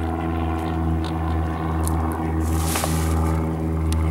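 A steady low drone made of several held tones, with a short rush of hiss about two and a half seconds in.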